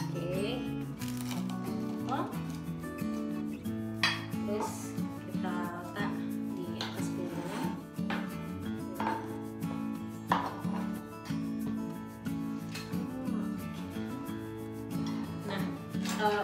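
Kitchen knife cutting through a fried egg martabak onto a plastic cutting board, a string of separate cutting and scraping strokes, over steady background music.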